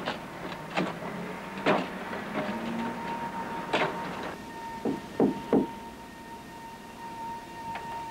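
Manual wheelchair rolling up a wooden ramp: a series of separate knocks and clunks, three of them close together about five seconds in, over a faint steady high tone.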